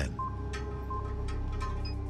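Ambient electronic background music: a low steady drone under short high beeps that repeat roughly every 0.7 s.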